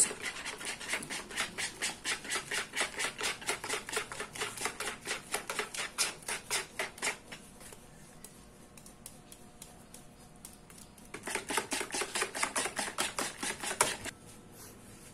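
Wire whisk beating a dissolved ube milkshake-powder mixture in a plastic basin, its wires clicking rapidly against the basin, about four or five clicks a second. The clicking pauses for a few seconds past the middle, then starts again.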